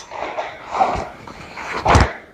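Movement sounds of a taekwondo form: the uniform swishing and feet on the foam mat through a front kick and block. A soft thump comes about halfway, and a louder, sharp hit near the end.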